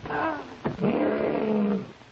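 A lion roaring twice: a short call, then a longer, steadier one lasting about a second.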